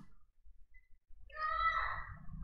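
A short, high-pitched animal call, like a meow, about a second and a half in and lasting under a second.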